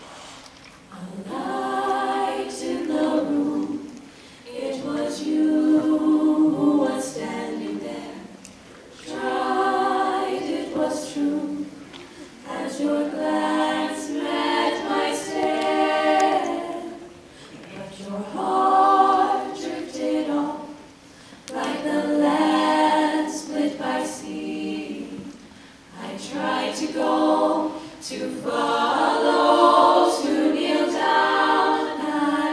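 Women's a cappella group singing sustained chords in close harmony into microphones. The song moves in slow phrases of a few seconds each, with short breaks between them.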